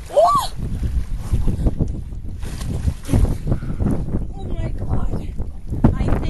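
Wind rumbling on the microphone aboard a yacht under way, with snatches of voices. A brief rising-then-falling cry comes near the start.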